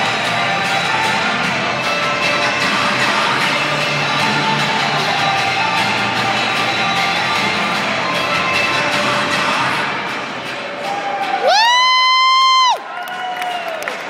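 Music plays for a pom dance routine over crowd noise. Near the end the music drops away and a spectator gives one loud, high-pitched whoop of about a second, rising and then held. A shorter, falling cheer follows.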